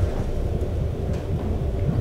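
A low, steady rumbling hum of room tone, with no speech.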